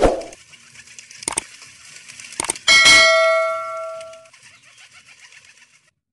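A loud thump, two sharp knocks, then a loud metallic clang that rings on and fades away over about a second and a half.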